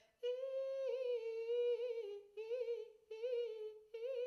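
A woman's singing voice demonstrating a vocal riff: a long held note whose pitch bounces in small turns, then three short wavering phrases that settle slightly lower, the sound bounced around rather than sung straight.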